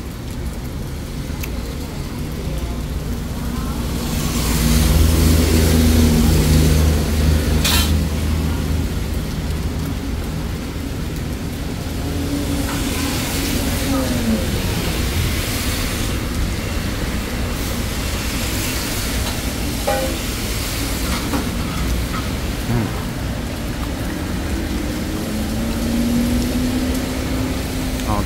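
Passing vehicle engines, their pitch rising and falling, loudest from about four to eight seconds in, with a sharp knock near eight seconds.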